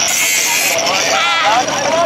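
Hand-held angle grinder cutting, a harsh high hiss that cuts off a little under a second in, with several people's voices raised over it throughout.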